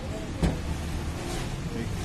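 Steady low rumble of street traffic around a food stall, with faint voices and one sharp knock about half a second in.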